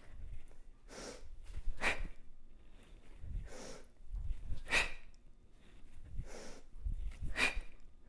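Forceful breathing during single-arm kettlebell hang cleans: three pairs of short, sharp breaths, a quick inhale as the bell drops to the hang and a hard hissing exhale as it is driven up into the rack, with faint low bumps alongside the later breaths.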